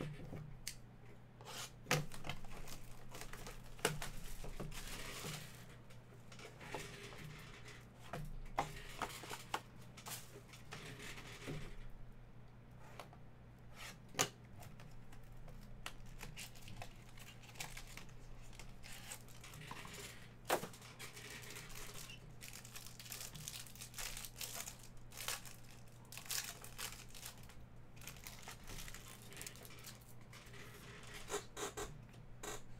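Plastic wrapping being torn and crinkled as a sealed trading-card box and its packs are opened by hand, with scattered sharp clicks and taps of cardboard and cards, over a steady low hum.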